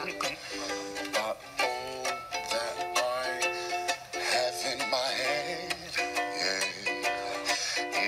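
Ukulele strummed in a steady rhythm, accompanying a man singing a comic song with sustained, wavering notes.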